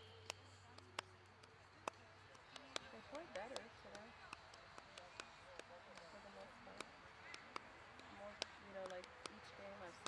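Near silence on the field: faint voices of players calling, with scattered sharp clicks and taps.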